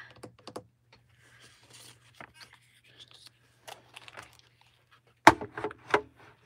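Manual die-cutting machine working a die and cutting-plate sandwich through its rollers: soft clicks and rustling, then a loud sharp clack a little after five seconds in and another near the end. The sandwich is not thick enough to cut cleanly, so more pressure is needed.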